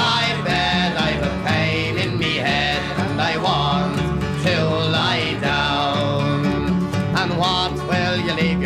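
Irish folk ballad music: an instrumental passage between verses, with plucked strings accompanying a melody line.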